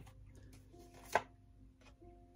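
Tarot cards being handled, with one sharp snap about a second in and a fainter one near the end.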